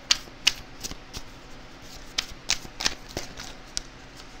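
A deck of oracle cards being shuffled by hand: about nine sharp, irregular card snaps and flicks.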